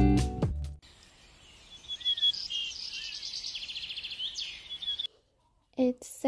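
Small birds chirping and trilling in quick, high calls for about three seconds, cutting off abruptly; before them, background music fades out within the first second.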